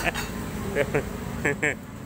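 Short bursts of a man's voice over a steady low hum of road traffic.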